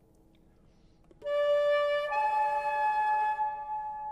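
Gold concert flute playing two held notes a fifth apart, a D then the A above. The first lasts about a second and the second fades out slowly. The lips cover the embouchure hole too much, an example of a too-closed aperture.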